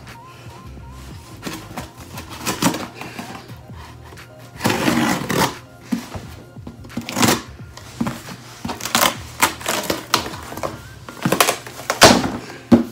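Knife cutting the packing tape on a cardboard shipping box, then the flaps and inner paper packaging being torn and pulled open: a run of irregular rips, scrapes and crinkles, the strongest about five seconds in.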